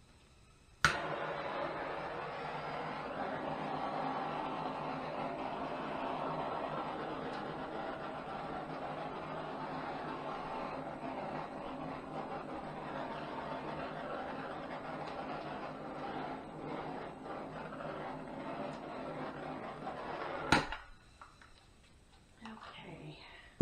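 Handheld gas torch clicked alight, its flame hissing steadily for about twenty seconds, then shut off with another click near the end.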